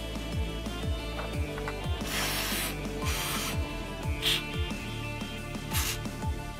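Aerosol spray can hissing in short bursts through a red straw into the corroded gear housing of an opened spinning reel, cleaning out salt corrosion. There are two longer sprays about two and three seconds in and shorter ones after, over background music with a steady beat.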